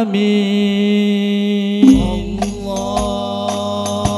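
Al-Banjari sholawat ensemble: male voices hold one long chanted note. About two seconds in the frame drums come in with deep bass strokes and sharp slaps in a rhythm.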